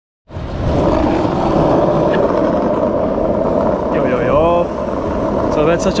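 Loud steady noise, heaviest in the low and middle range, that starts abruptly just after the start, with a short bit of a man's voice about four seconds in and speech beginning near the end.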